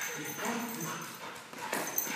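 A yellow Labrador moving about on a lead with a toy in its mouth: quiet taps of its paws and claws on the floor, with faint dog sounds.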